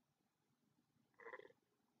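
Near silence: room tone, with one brief faint sound a little over a second in.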